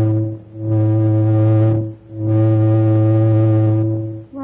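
Deep, steady horn-like tone on a single pitch, sounded in repeated blasts about a second and a half long with short breaks between.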